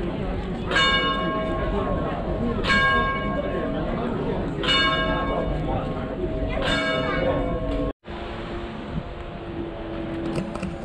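Clock-tower bell striking four times, about two seconds apart, each stroke ringing on until the next, over the hum of street voices. The ringing is cut off short about eight seconds in.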